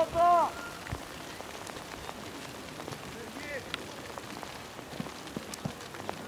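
A single loud shout during a football match in the first half-second, followed by a steady hiss of background noise with a few faint distant shouts and small knocks.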